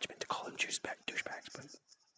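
A man speaking quietly, almost in a whisper: only low, half-voiced speech.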